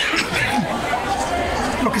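Several voices talking over one another at close range, a press scrum's chatter of questions and answers.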